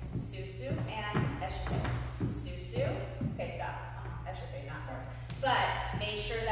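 A woman's voice calling out the steps in drawn-out syllables, with a steady low hum of the room beneath it.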